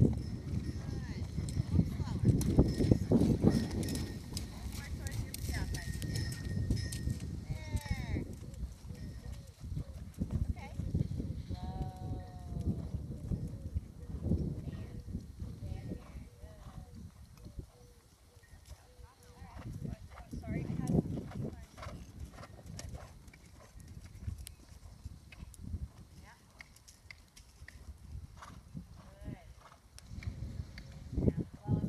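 Hoofbeats of a horse cantering on a sand arena. They are loudest over the first several seconds as the horse passes close, fade off, and rise again about twenty seconds in.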